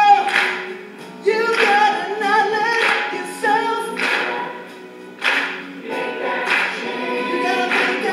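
Several voices singing, with a sharp hit on the beat about every second and a quarter.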